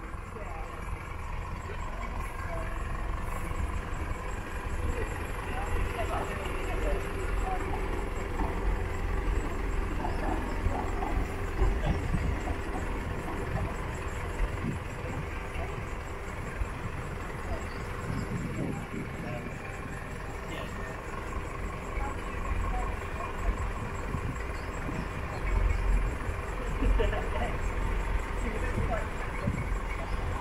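Class 158 diesel multiple unit approaching at low speed, its diesel engine running steadily, with wind rumbling on the microphone.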